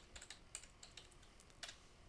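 Faint keystrokes on a computer keyboard: a quick run of taps, then a few spaced ones, as a word is typed and entered.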